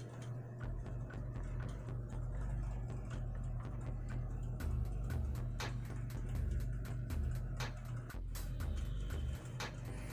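Quiet background music with a low bass line that changes note in blocks, with scattered sharp clicks over it.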